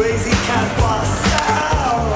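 Music soundtrack with a snowboard scraping and sliding over packed snow through the first second and a half.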